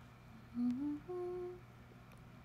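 A young woman humming with her mouth closed: a short note that steps upward about half a second in, then a slightly higher note held for about half a second.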